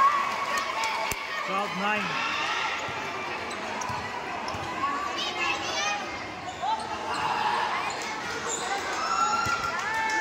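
A basketball bouncing on a gym court during live play, amid the shouts and chatter of players and spectators.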